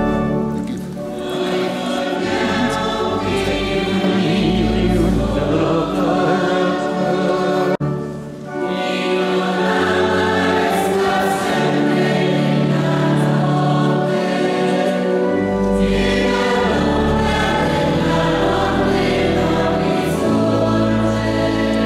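Choir singing a sacred hymn in long held notes, with a brief break about eight seconds in.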